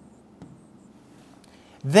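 Faint ticks and light rubbing of handwriting on an interactive touchscreen display, with a couple of small clicks in the first half second; a man's voice starts near the end.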